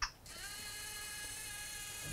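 Small electric motor of a Lego test robot whirring as the robot moves its iPhone carriage over the guitar pickups. A brief click comes first, then the whine rises in pitch a fraction of a second in and holds steady.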